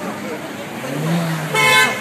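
A car horn sounds in one loud, short blast of about half a second near the end, over street traffic and voices.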